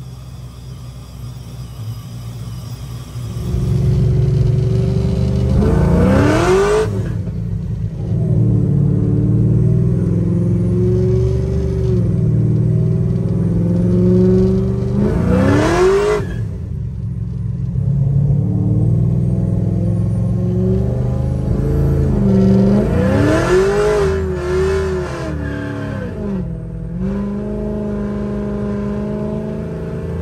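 Supercharged LY6 6.0-litre V8 in a Ford Fairmont, quieter for the first few seconds, then accelerating hard in three pulls, each rising in pitch and then dropping off sharply.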